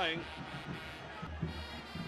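Brass horns playing steadily among the stadium crowd, a sustained pitched blare under the low crowd rumble of a football match.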